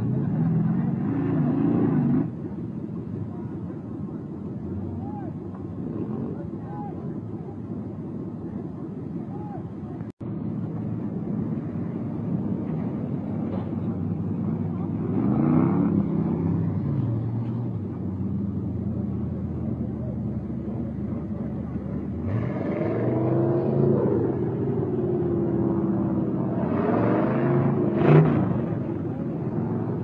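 Off-road 4x4 truck engines running and revving through mud and water, the pitch rising and falling repeatedly, with the strongest revs about halfway through and again near the end. A brief dropout about a third of the way in breaks the sound.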